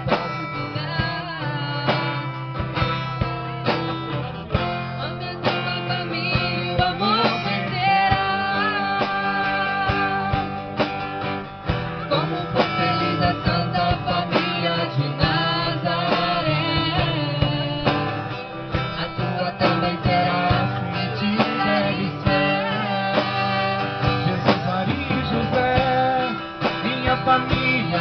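Live band playing a song: acoustic guitar strummed over a drum kit, with a man and a woman singing into microphones.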